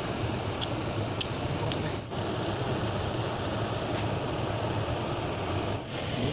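Steady rush of a shallow flowing stream, with a few sharp clicks in the first two seconds, the loudest about a second in.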